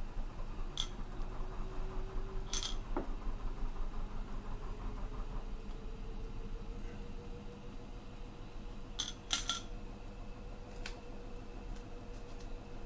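Ramune bottles clinking against the gas stove's grate and pot: a few sharp clinks with a short glassy ring, the loudest a quick pair about nine seconds in. A steady low hiss, from the lit gas burner, runs beneath.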